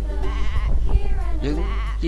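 A person's voice drawing out wavering, pitched syllables in Khmer, over a steady low hum.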